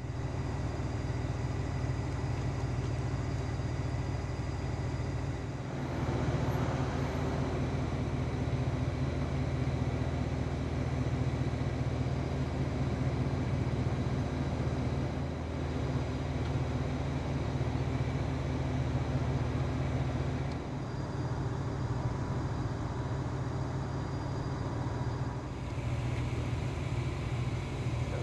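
A vehicle engine idling steadily, a low hum with outdoor street background noise. The background level shifts a few times.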